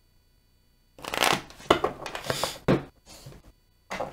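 A deck of tarot cards being shuffled by hand. The shuffle starts about a second in: a dense rustle of cards with a couple of sharp snaps, then a briefer, softer patch of card noise.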